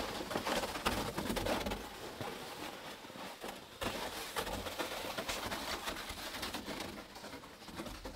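Footsteps crunching in deep snow and a plastic sled dragging over the snow behind them: a dense, irregular crackle that goes on throughout.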